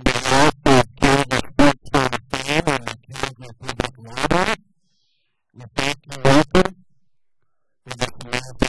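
A man speaking into a handheld microphone, in two runs of speech with a pause of about a second between them.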